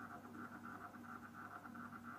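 Faint, steady machine hum with a fast, even pulsing from a running Advanced Instruments Model 4D3 cryoscope.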